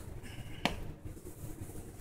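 Quiet room tone broken by one sharp click about two-thirds of a second in, as a handheld rotary cutter is handled and lifted off the fabric.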